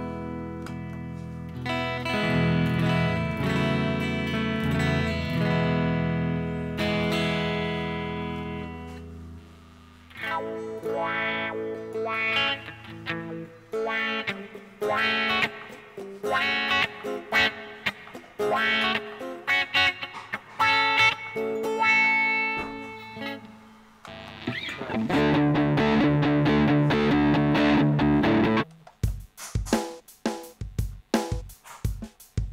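Electric guitar (Lyon by Washburn HSS, Wilkinson pickups) played on the neck pickup through a Zoom G1Xon multi-effects pedal. It opens with ringing sustained chords, moves to picked single notes, and plays a louder, denser strummed passage near the end. A drum-machine beat from the pedal starts just before the end.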